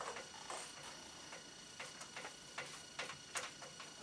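Faint, irregular light taps and short scrapes of a handheld eraser and marker on a whiteboard, about two a second.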